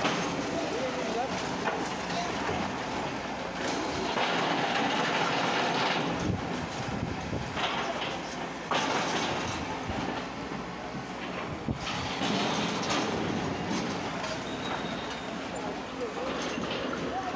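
Excavator demolishing a brick building: rumbling, clattering crash of masonry and rubble breaking and falling over the running machine, with louder crashes about four, nine and twelve seconds in.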